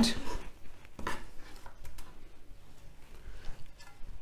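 Kitchen knife cutting through an onion and knocking on a wooden chopping board, a few faint, scattered knocks.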